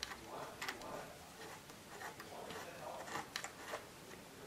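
Faint, irregular small clicks and handling noise as a bolt fixing a mounting plate to a telescope mount head is tightened by hand.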